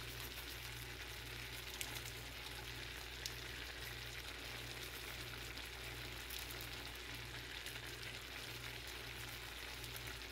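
Shrimp frying in a pan of olive oil and Italian dressing: a steady sizzle with an occasional small pop.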